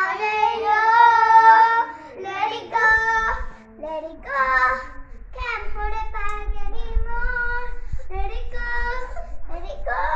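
Children singing a pop song, a girl's voice leading and a boy singing along, with no instrumental backing. A low rumble runs underneath from about three seconds in.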